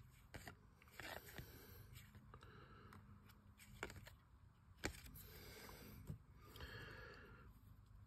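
Near silence, with faint scraping and a handful of soft ticks as paper baseball trading cards are slid and flipped one behind another by hand. The clearest tick comes just before the midpoint.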